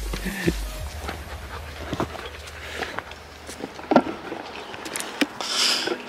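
A husky panting hard and breathing noisily, worn out from the cliff path, with a few light scuffs and clicks.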